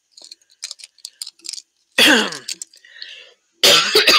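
A woman clears her throat twice: a loud rasp with a falling pitch about two seconds in, and a second, harsher one near the end. A few faint light clicks come before.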